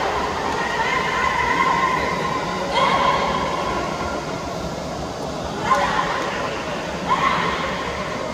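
Voices over a steady background din in a bullfighting arena: one long drawn-out call held for about two seconds, then short shouts about three, six and seven seconds in.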